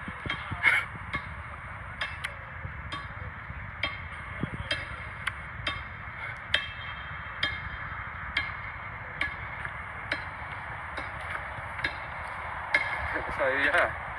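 Repeated sharp metal-on-metal strikes, roughly one a second, several with a brief ringing: a tool hammering at a manhole cover that has been welded shut, trying to break it open.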